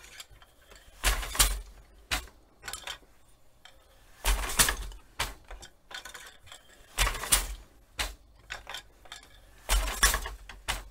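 Wooden rigid-heddle loom clacking as the heddle is shifted between its up and down positions and beaten against the woven cloth, with a stick shuttle passed through the shed. Sharp wooden knocks, often two close together, come about every three seconds, with lighter clicks between.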